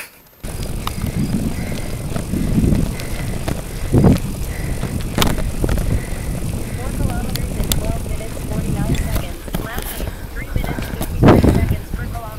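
Wind rushing over the microphone of a camera carried on a moving bicycle, a steady low rumble that begins abruptly about half a second in, with a few sharp clicks and knocks and a louder thump near the end.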